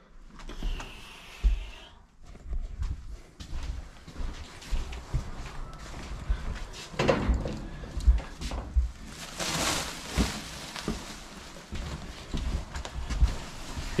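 Footsteps and irregular dull thuds as heavy sacks of used clothing are carried and set down, with louder rustling and scuffing twice, about seven and ten seconds in.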